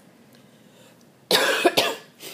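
A woman coughing, two quick coughs a little over a second in.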